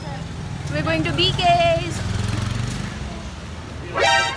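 Busy street noise: a low, steady vehicle engine rumble that fades after about three seconds. A voice calls out briefly about a second in.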